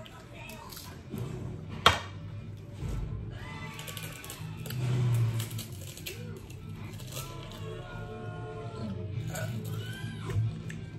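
Background music with voices, and one sharp click about two seconds in.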